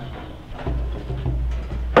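Children moving about a classroom full of hand drums, with a low rumble of movement starting a little way in and faint scattered chatter and knocks.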